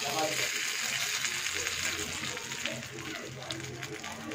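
Hot tempering oil with mustard seeds, curry leaves and dried red chilli sizzling and crackling as it hits a bowl of coconut chutney, the sizzle slowly dying down.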